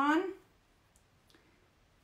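A few faint clicks and light scrapes, about a second in, as ink is worked over a silk screen transfer laid on a fabric dish towel.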